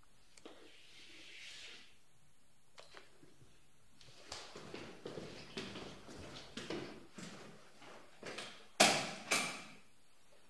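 Chalk scratching on a blackboard, followed by a run of light irregular knocks and clatters, with two loud sharp knocks near the end.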